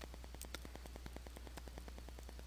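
Faint background noise of a recording: a steady low hum with a rapid, even ticking, about ten ticks a second, typical of electrical interference.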